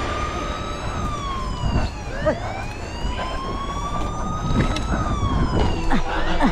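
Police siren wailing, its pitch rising and falling slowly, with a second siren sweep starting about two seconds in.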